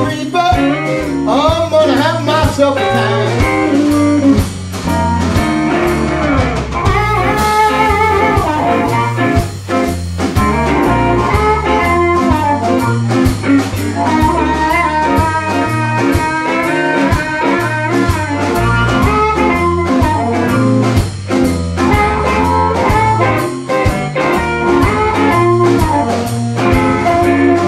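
Electric blues band playing an instrumental passage: amplified harmonica played through a microphone cupped in the hands, with notes bending up and down, over the band's guitar and drums.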